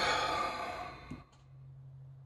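A man's long breathy exhale, a sigh, fading out over about a second, followed by a faint click.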